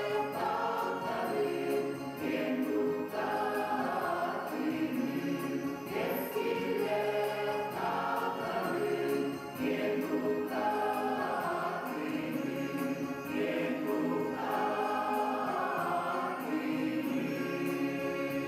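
Mixed choir of men's and women's voices singing a Sakha-language song together in harmony, in long sustained phrases.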